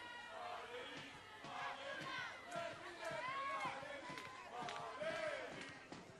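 Ballpark crowd and players' voices: several people shouting and calling out at once, overlapping, with no single voice standing out.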